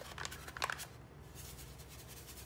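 Dry salad dressing mix packet crinkling as it is handled and opened over the pot, with a few sharp crackles in the first second, then a faint rustle as the powder is tipped out.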